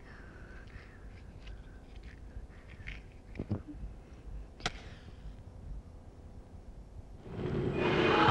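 A quiet film soundtrack with a few faint clicks and small handling knocks. In the last second a loud rush of sound builds as a fire flares up.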